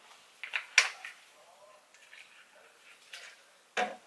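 A few sharp clicks and light knocks, the loudest about a second in, with another short knock near the end.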